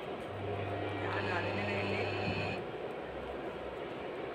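Induction cooktop humming as it cycles on for about two seconds, a low hum with a faint high whine, then cutting off.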